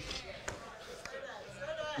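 A single dull knock about half a second in, followed near the end by a faint voice in the room.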